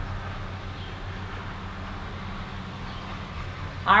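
Steady background hum with a low drone and a faint hiss, unchanging, with no distinct events.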